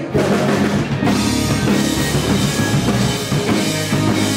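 Live rock band playing: drum kit to the fore with bass and electric guitars. The band comes in hard right at the start, and the cymbals and guitars fill out the top end about a second in.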